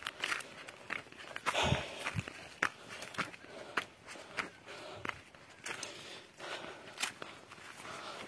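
Footsteps of a person walking on a dry dirt footpath, uneven steps about one to two a second.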